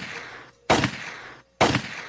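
Mixtape gunshot sound effect between songs: sharp shots about a second apart, each dying away in a long echo.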